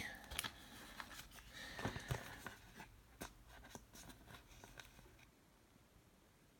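Faint clicks and light rubbing of a glossy trading card being handled and turned over in the fingers, dying away about five seconds in.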